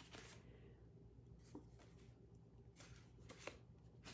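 Faint rustling of sheets of designer paper as they are flipped over by hand, a handful of soft, short paper sounds over near-quiet room tone.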